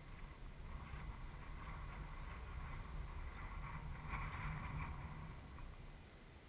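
Wind rumbling on the microphone, with a faint hiss that swells over the middle seconds and fades near the end.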